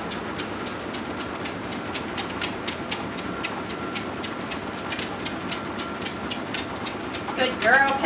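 Horizon treadmill running steadily with a faint motor whine, the belt carrying a trotting dog whose paws tap on it in a quick, even rhythm of a few steps a second.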